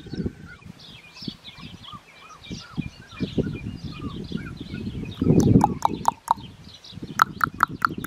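Birds chirping in the background, with a run of sharp, quick chips about six seconds in and another near the end, and a brief rustle about five seconds in.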